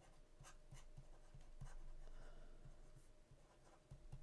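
Faint taps and scratches of a stylus writing by hand on a tablet screen.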